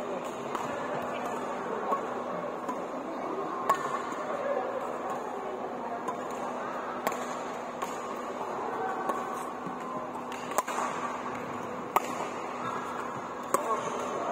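Sports-hall background of distant voices, broken by a few sharp clicks of badminton rackets striking shuttlecocks on nearby courts, about one every few seconds, with a louder one near the end.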